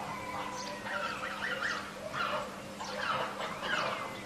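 A string of short animal calls, one after another, over a steady low hum.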